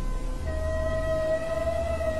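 Background music: a sustained synthesizer drone, with a steady held note coming in about half a second in over a low hum.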